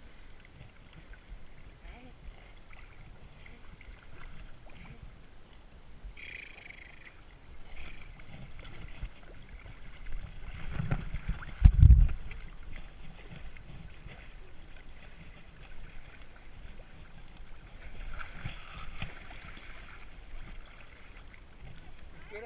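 Lake water sloshing and splashing around horses wading chest-deep, picked up close by a wearable camera, with one loud low thud about halfway through.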